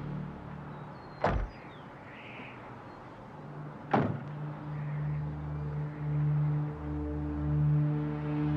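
Low, sustained film-score drone broken by two sudden sharp hits, one about a second in and one about four seconds in; the drone swells again after the second hit.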